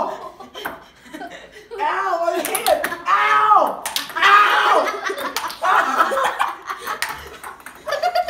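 Boys whooping and laughing excitedly, loudest a couple of seconds in, with several sharp clicks of a table-tennis ball striking paddles and the table.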